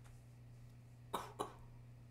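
A person coughing twice in quick succession about a second in, over a faint low steady hum.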